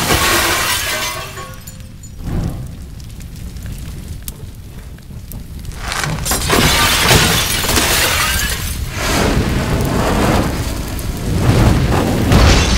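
Dramatised film sound of a crash and scattering debris, then a quieter lull, then a louder stretch of breaking and burning from about halfway through as fire takes hold.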